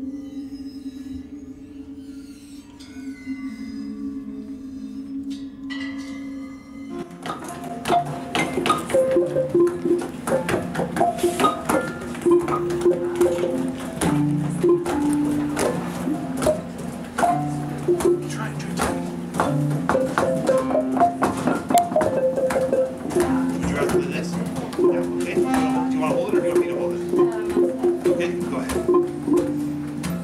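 Waterphone sounding a held, eerie metallic tone. About seven seconds in, a busy layer of changing pitched notes and sharp taps joins it and carries on as improvised music.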